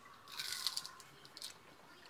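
A person chewing a bite of ripe tomato close to the microphone: a quick run of mouth clicks lasting about a second, starting just after the start.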